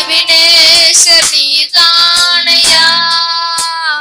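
Two boys singing a devotional song on long held notes with vibrato, over a Yamaha PSR-S775 arranger keyboard accompaniment.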